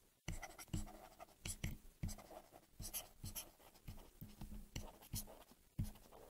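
Stylus handwriting words on a tablet: faint, irregular taps and scratches, a few per second.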